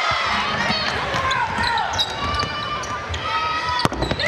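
Gym ambience during a basketball game: voices and other game noise from the court and stands, with one sharp knock just before the end.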